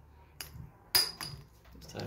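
A metal Pokémon TCG Dragonite coin being flipped: a faint click about half a second in, then a sharp clink with a brief high metallic ring about a second in.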